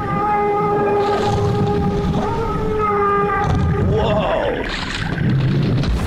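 Whale calls from an animated whale: one long, steady call held for about three and a half seconds, then shorter wavering calls, over a low rumble. The whale is caught in a shipwreck's rigging and struggling, so these are distress calls.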